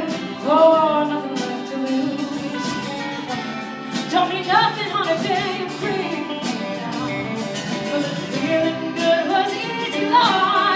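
A live band plays a country-rock song while a singer holds long, sliding notes. It is heard from far back in a large theatre auditorium, so it sounds distant and roomy.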